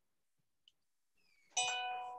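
A single chime sounds about one and a half seconds in, one steady tone with several overtones that fades away over nearly a second, after near silence.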